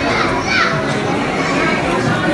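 Indistinct chatter of several people at once in a large, echoing hall, with some high-pitched voices among them.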